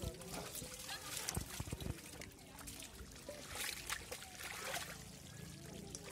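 Muddy water trickling and dripping from a woven basket lifted over a pot, with soft splashes in wet pond mud.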